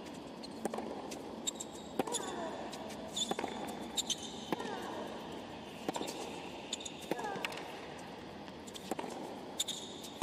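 Tennis rally on a hard court: sharp racket strikes and ball bounces, roughly one every second. Short high squeaks of shoes on the court surface come between the hits, over a low murmur of the crowd.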